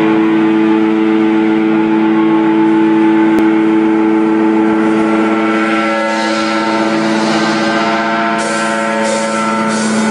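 Electric guitar through an amplifier holding one distorted chord that drones on without fading. From about eight seconds in, bursts of hiss come in over it.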